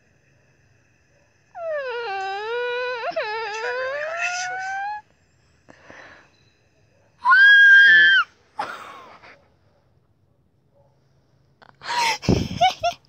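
A person screaming in excitement. First comes a long, wavering squeal about a second and a half in that climbs in pitch over some three seconds. Then, about seven seconds in, there is a shorter, higher and louder shriek.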